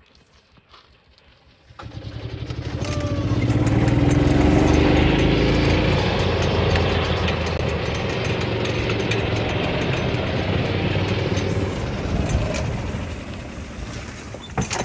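Fuel-injected Yamaha gas golf cart engine coming on about two seconds in as the cart pulls away, then running steadily as it drives along a gravel path, with tyre noise on the gravel. It eases off near the end.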